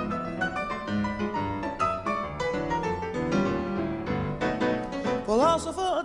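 Piano playing a quick run of struck notes. Near the end a singer's voice slides up into a wavering held note.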